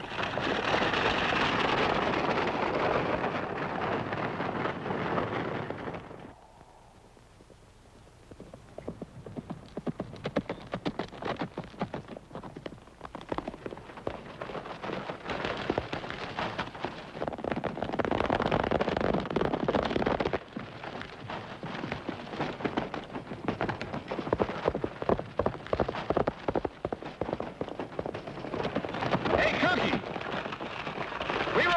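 A horse-drawn stagecoach team galloping off, with a dense rumble of hooves and wheels for about six seconds. After a brief drop in level, a galloping horse's hoofbeats clatter fast and unevenly over rough ground, swelling and fading.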